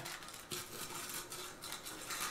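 Faint rustling and light clatter of tortilla chips being worked into a glass blender jar by hand, with a small click about half a second in. The blender is not running.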